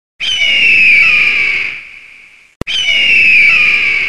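A bird of prey's scream, heard twice: two long, slightly falling screeches with a sharp click between them.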